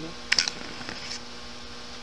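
Steady electrical mains hum, with a brief cluster of sharp clicks and knocks about a third of a second in.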